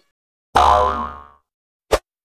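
A cartoon "boing" sound effect: it starts suddenly about half a second in and fades away in under a second. A short sharp click follows near the end.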